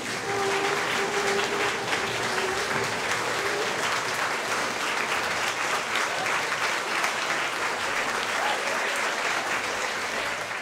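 Audience applauding steadily, with a held tone for the first few seconds.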